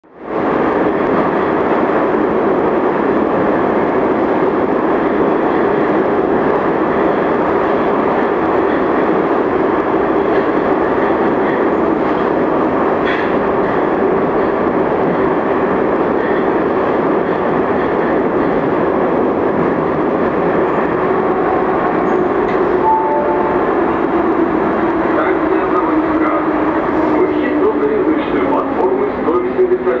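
Metro train (81-717/714 cars) running, heard inside the car: a loud, steady running noise from wheels and motors with a steady whine. Over the last several seconds the whine falls in pitch as the train slows into a station.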